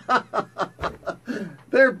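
A man chuckling: a quick run of short laughs, about five a second, trailing off after about a second and a half.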